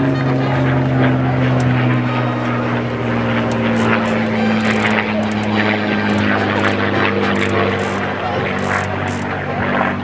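Low steady drone of an aircraft engine, its pitch falling slowly throughout, heard over voices and faint clicks.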